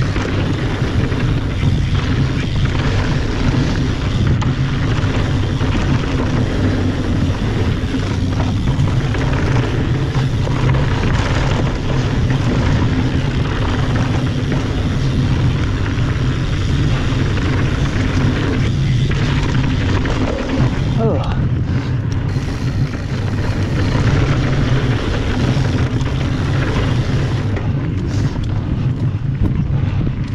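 Mountain bike riding down a packed-dirt trail: wind buffeting the camera microphone over a steady rush of tyre noise and rattle from the bike.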